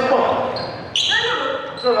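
A basketball bouncing on a gymnasium's wooden floor, with one sharp bounce about a second in, under players' voices calling out in an echoing hall.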